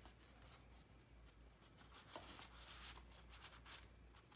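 Faint rustling and soft taps of cardstock pages and a paper file-folder insert being handled and turned in a handmade paper mini album.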